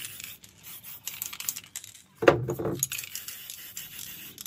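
Aerosol spray paint can hissing in short sprays, then a louder metallic rattle from the can about two seconds in, typical of the mixing ball knocking inside.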